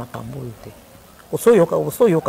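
A woman speaking in an animated voice, with a lull of about a second in the middle before she speaks again.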